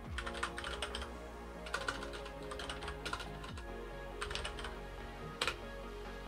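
Typing on a computer keyboard in several short bursts of keystrokes, over steady background music.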